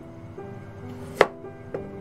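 Kitchen knife cutting through a taro root and striking the cutting board: one sharp chop a little over a second in and a lighter knock near the end, over background music.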